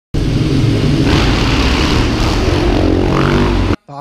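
KTM 690 SMC R's single-cylinder engine running loudly inside a road tunnel, stopping abruptly just before the end.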